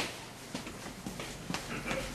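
Quiet room with a sharp click at the start, then a few faint, irregular light knocks.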